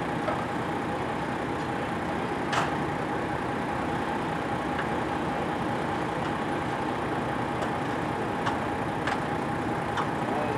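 Steady rumble of an idling vehicle engine, with a faint steady high tone over it and a few light clicks, the clearest about two and a half seconds in.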